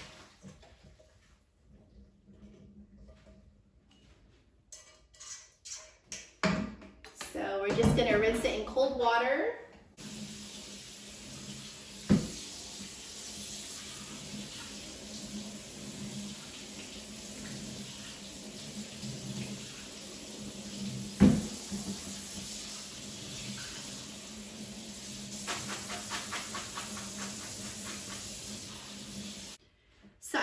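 Pasta water poured out of a pot into a strainer in a kitchen sink, splashing and gurgling from about six to ten seconds in. Then a faucet runs steadily into the sink to rinse the drained pasta with cold water, with two sharp knocks of pot or strainer against the sink. The water cuts off just before the end.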